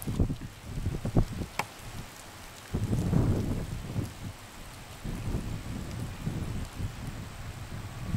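Wind buffeting the microphone in gusts: an uneven low rumble that swells about three seconds in and carries on more weakly, with a few sharp clicks in the first second and a half.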